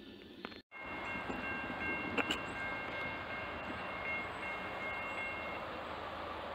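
A train horn sounding one long steady blast of several notes together over a steady rumbling noise. A sharp knock comes about two seconds in. The sound drops out completely for an instant just before the horn starts.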